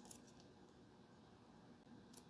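Near silence: room tone, with one faint tick just after the start.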